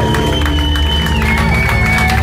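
Live reggae/dancehall band music: a heavy steady bass under held keyboard notes, the highest note stepping down in pitch about halfway through, with a crowd cheering.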